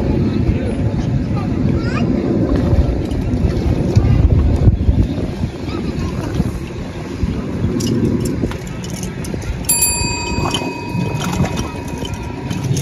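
Wind buffeting the microphone as a steady low rumble, with a brief steady high-pitched tone about ten seconds in.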